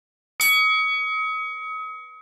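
A single bell-ding sound effect, struck about half a second in and ringing with a clear chime that slowly fades. It marks a click on the notification-bell icon of a subscribe animation.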